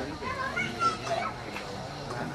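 Background chatter of several people, including higher-pitched children's voices.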